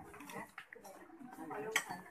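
Faint voices talking in the background, with a few light clinks and one sharper click a little before the end.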